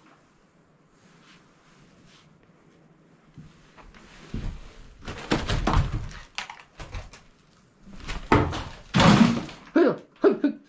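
Objects thrown onto the floor, landing with a series of loud thunks from about four seconds in, the loudest near the end; they are thrown to scare off the animals that have taken over the house.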